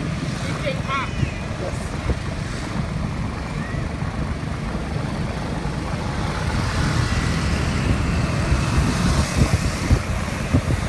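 Steady road noise heard from a moving motorbike: a low rumble of engine, tyres and wind on the microphone, with city traffic around, growing a little louder near the end.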